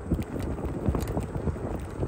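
Ninebot scooter's wheels rolling over rough, cracked asphalt, a steady rough rumble with many small irregular clicks and knocks, under wind noise on the microphone.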